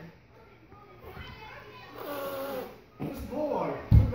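A young child's quiet voice murmuring and vocalising, with a sharp thump just before the end.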